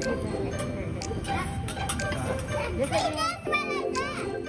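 Background chatter of diners, including children's voices, with sharp metal clinks and scrapes of a steel spatula and fork on a flat-top teppanyaki griddle.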